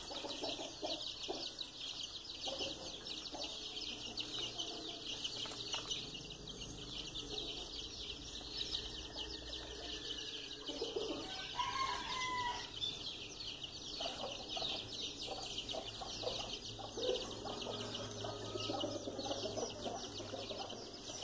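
A free-range hen clucking softly and intermittently while her chicks peep constantly around her.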